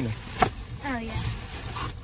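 A single sharp click about half a second in, then a brief, soft voice fragment, over a low steady background hum in a car cabin.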